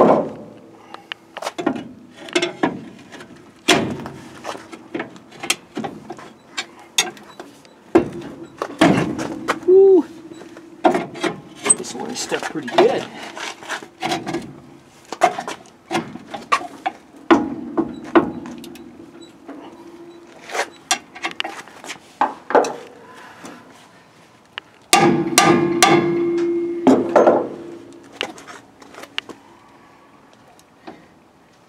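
Rusted steel brake drum on a seized front wheel being worked loose: irregular metal knocks and clanks, with several stretches of a steady squeal from the drum rubbing on brake shoes stuck to it. The loudest squeal comes near the end.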